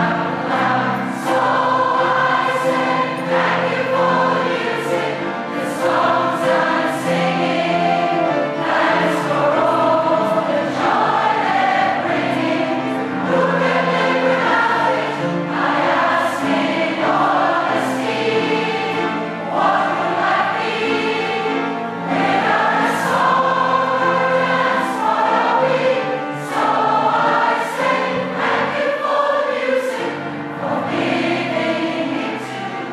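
A large community choir, mostly women's voices, singing together in sustained phrases, with the sharp 's' sounds of the massed singers cutting through again and again.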